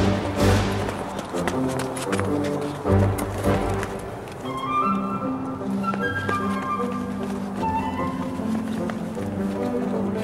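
Orchestral film-score music with sustained strings. A few heavy low thuds sound in the first few seconds, then higher held notes come in around the middle.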